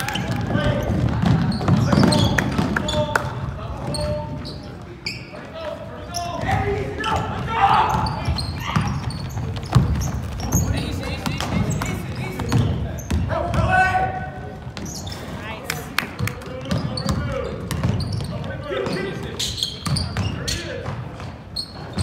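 Basketball dribbling on a hardwood gym floor, with shouting voices of players and spectators echoing in the hall.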